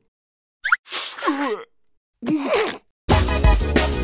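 Cartoon character's wordless voice: a quick rising squeak, then a falling whimper and a short cry, with silent gaps between them. Upbeat music comes in about three seconds in.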